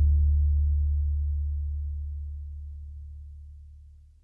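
The song's last low bass note ringing out alone and fading away over about four seconds.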